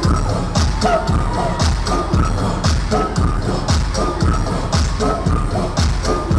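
Loud dance-pop music with a steady fast beat, played over a concert hall's sound system.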